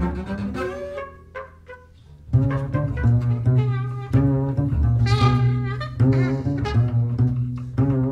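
Double bass bowed in a jazz improvisation: long, held low notes rich in overtones. The playing thins out and goes quieter about a second in, then comes back strong with held low notes a little past two seconds.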